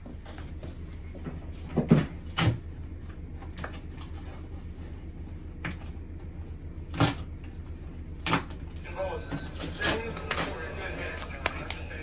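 Scattered knocks and thumps from handling a large cardboard flat-pack furniture box over a steady low hum, a few of them sharp, about two seconds in, seven seconds in, and a little past eight seconds.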